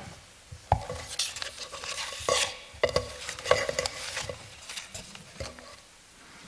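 A string of irregular light clicks and knocks from objects being handled, some with a brief ring, spread through the pause.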